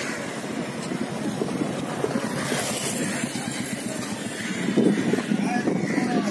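Busy street ambience: indistinct chatter of a crowd mixed with traffic noise from passing motorbikes and other vehicles.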